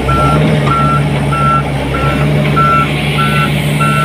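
Volvo wheeled excavator at work: its diesel engine runs with a steady low drone while its warning alarm beeps in one high tone, about twice a second.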